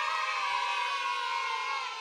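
A crowd of many voices holding one long cry, sliding slowly down in pitch, that starts suddenly just before and cuts off abruptly; it sounds like an edited-in crowd sound effect.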